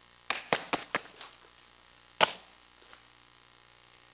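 Open-hand strikes slapping a handheld strike pad: a quick run of about five slaps in the first second or so, then one louder smack a little past two seconds in and a faint one shortly after.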